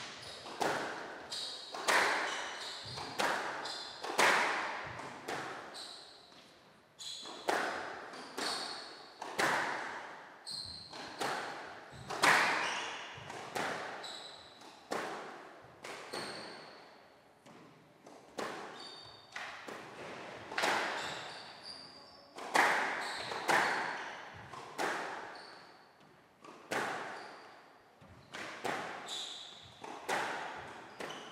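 Squash rally: the ball struck by rackets and smacking off the court walls about once a second, each hit echoing in the enclosed court, with short high squeaks of shoes on the wooden floor in between.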